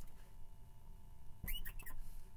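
Marker squeaking on a glass writing board: a few short, high squeaks about one and a half seconds in, over a faint steady hum.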